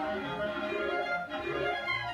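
Clarinet choir playing, led by several solo clarinets: a busy line of quick changing notes over a lower moving bass part.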